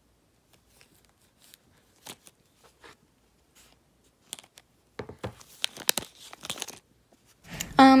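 Plastic slime tubs being handled and set down, with scattered light taps and clicks, then about five seconds in a couple of seconds of crinkling and rustling as packaging and a card are picked up.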